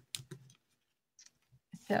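A few short, faint clicks in the first half second, then near silence, with a woman's speech starting just before the end.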